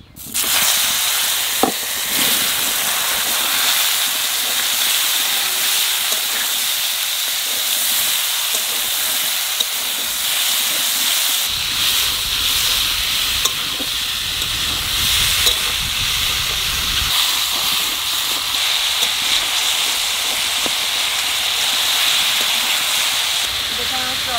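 Pieces of ridge gourd going into hot oil in a steel wok and frying with a loud, steady sizzle that starts suddenly at the very beginning.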